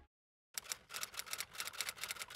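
Typing sound effect: a fast run of key clicks, about six or seven a second, starting about half a second in.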